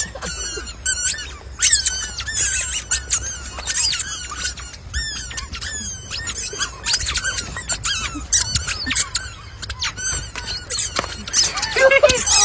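Rubber squeaky chicken toys being stepped on, giving many short, high squeaks in quick succession.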